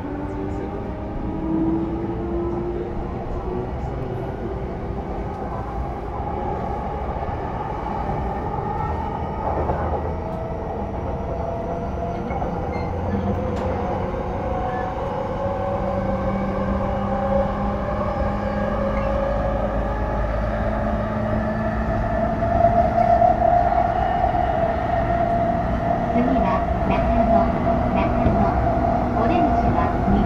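JR East E233 series 0 electric train running, heard from inside the car: the Mitsubishi IGBT VVVF inverter and traction motors whine in several tones that rise slowly in pitch over a steady rail rumble, getting louder toward the end as the train picks up speed.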